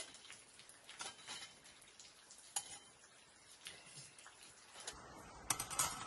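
Irregular light clicks and taps of a small folding metal camp stove and a knife being handled, with a quick, louder cluster of clicks near the end.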